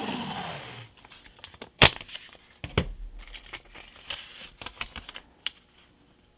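Blue painter's tape ripped off its roll, a noisy rip in the first second, followed by crinkling and handling of the tape strip. A sharp snap a little under two seconds in is the loudest sound, with scattered light taps and rustles after.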